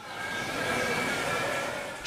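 Steady outdoor background noise: an even hiss with a few faint high tones in it. It swells in gently and fades out at the end.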